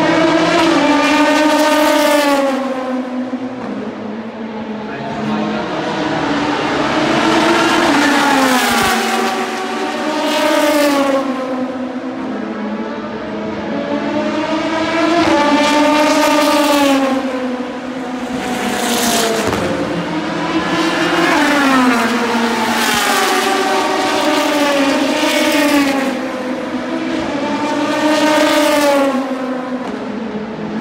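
Endurance race cars passing at speed one after another, loud each time a car goes by. Each engine note falls in pitch as the car passes, with steps of gear changes between passes.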